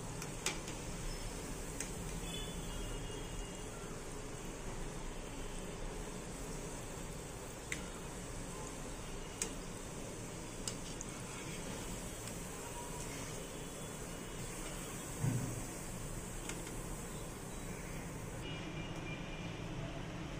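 Gulab jamun dough balls deep-frying in hot oil on a low flame: a steady sizzle with a few small pops, and one low thump about fifteen seconds in. The sizzle thins near the end.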